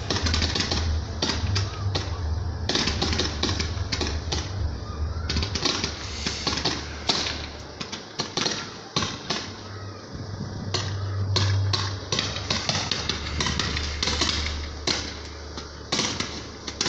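Fireworks display going off: a rapid, irregular string of sharp cracks and pops over a steady low rumble, recorded through a phone microphone.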